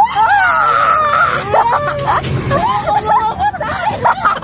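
High-pitched voices laughing and exclaiming without clear words, over the running noise of the small passenger vehicle they ride in.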